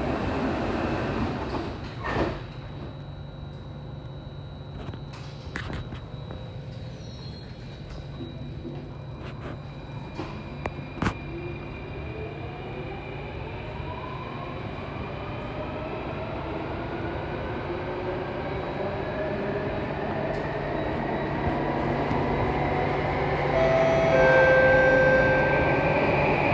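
Metro train's sliding doors closing with a thud about two seconds in, then a steady low hum while the train stands. From about twelve seconds the traction motors' whine rises in pitch as the train pulls away and gathers speed, growing louder.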